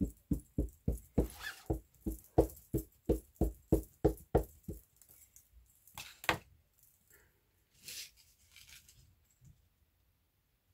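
An ink pad dabbed rapidly against a clear stamp on an acrylic block to ink it, an even run of sharp taps at about four a second that stops about five seconds in. A couple of separate clicks and knocks follow as the block is handled and set down on the paper.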